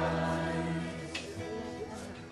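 Worship song: a male singer with an acoustic guitar over a PA, with the congregation singing along. The music grows quieter toward the end.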